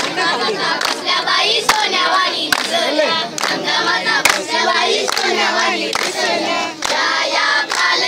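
A group of boys chanting a devotional gajar in unison while clapping along, the sharp hand claps keeping a steady beat a little faster than once a second.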